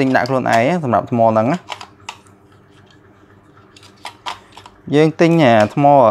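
A man talking, with a pause in the middle in which a few light plastic clicks come from AA batteries being pressed into the battery compartment of a toy drone's remote controller.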